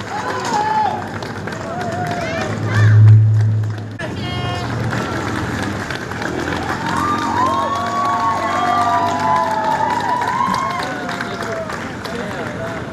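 Crowd and performers calling out and cheering with overlapping voices as a percussion show ends, with a deep steady low tone for about a second and a half, about three seconds in.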